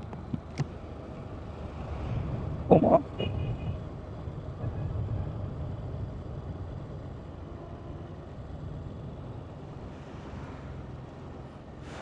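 Motorcycle riding along a highway: a low, steady engine and road rumble. A brief louder sound comes about three seconds in.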